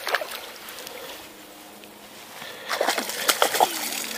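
A hooked trout thrashing at the water's surface close to the bank. After a quieter stretch, a quick run of splashes begins near the end.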